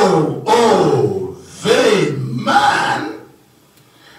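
A man's voice into a handheld microphone: two drawn-out vocal sounds with falling pitch, not recognisable as words, then a short pause near the end.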